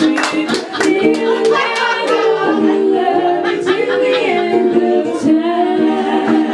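Three women singing in close harmony over a strummed concert ukulele, the voices holding long notes and moving together.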